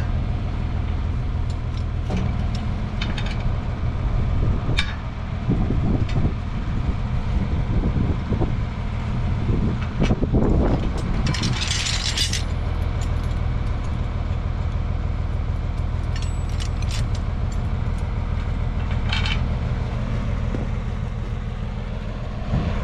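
Metal clinks and scrapes of wrenches on a 9/16 bolt and the steel links of a chain harrow while a broken link is refastened, over the steady low drone of an idling tractor engine. A brief hiss comes about eleven seconds in.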